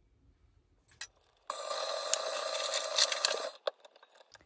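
KitchenAid stand mixer motor switched on, running steadily for about two seconds as it mixes the batter, then shut off. A click comes just before it starts, and a few sharp clicks follow as it stops.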